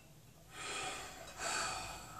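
A person sighing: two long, breathy exhalations, one after the other.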